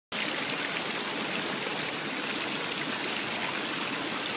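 Steady sound of running water at a swimming pool, an even rushing with no breaks.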